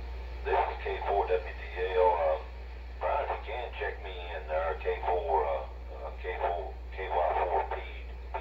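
A voice received over a 2-metre amateur radio transceiver's speaker: thin, narrow-band speech in several phrases with short pauses, over a steady low hum. It is a station answering a simplex-net call.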